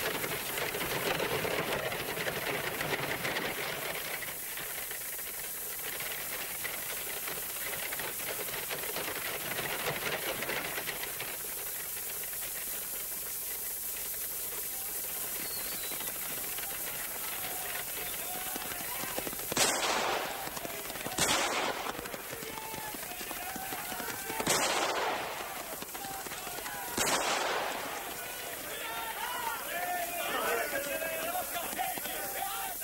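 Four gunshots, each with a short ringing tail, come one after another about two-thirds of the way in, unevenly spaced over some eight seconds, with faint shouting between them. Before them there is only the steady hiss of an old film soundtrack with a busy rustling texture.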